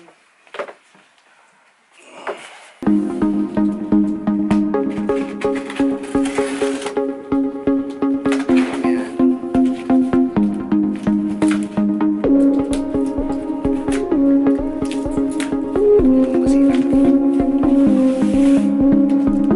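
Background music that comes in about three seconds in: sustained chords that change every few seconds over a regular beat. Before it, a few faint short noises.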